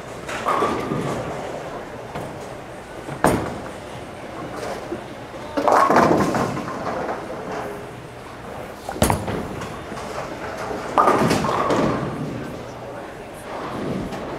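Bowling alley noise: two sharp knocks, about three seconds and nine seconds in, among longer clattering bursts and background voices.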